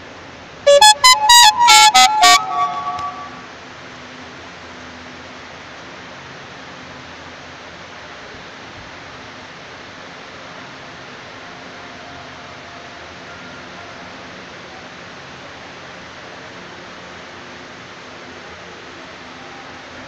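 A loud, short melodic tune of several quick pitched notes, each struck sharply and ringing briefly, starting about a second in and dying away within about two and a half seconds. After it comes a steady low background hum.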